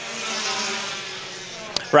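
A pack of Pure Stock race cars under power on a restart, the engine noise of the field swelling and then slowly fading as the cars go by. A brief click sounds near the end.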